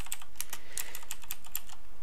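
Typing on a computer keyboard: a run of quick, irregular key clicks, about five a second.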